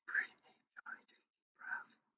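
A man whispering or breathing out in three short, breathy bursts with no voiced tone, fairly faint.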